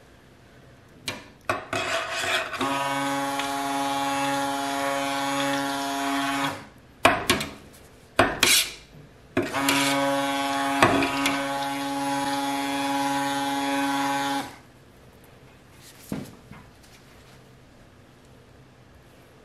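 Stick blender running in two bursts of about four and five seconds, mixing lye solution into oils in a stainless steel stockpot to emulsify the soap batter. The motor gives a steady hum, with a few sharp knocks before and between the bursts and one more near the end.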